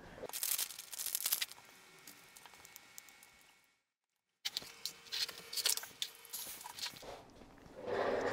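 Small clicks, taps and rustles of parts and tools being handled on a repair workbench, in two spells, with a moment of total silence about halfway through.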